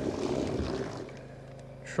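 Electric trolling motor running and churning the water behind a small boat, easing off about a second in.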